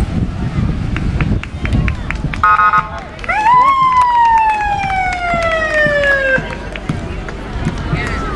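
A siren that climbs quickly to a peak and then falls slowly and steadily in a single long wail before cutting off, with a brief held horn-like tone just before it, over crowd chatter along a street parade route.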